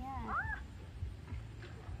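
A single short, high-pitched cry about a quarter second in, rising and then falling in pitch. A low rumble runs underneath.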